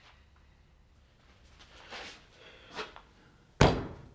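Soft handling rustles, then a single sharp thump on a wooden counter near the end.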